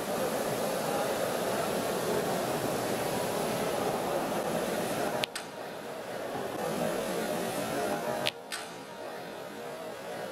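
Indistinct murmur of a crowd of spectators, steady, with two abrupt drops in level about five and eight seconds in.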